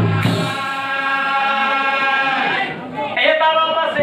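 A man's voice chanting nagara naam, the Assamese devotional song, through a microphone, in long held notes: one steady line, a downward slide about three seconds in, then a new held note.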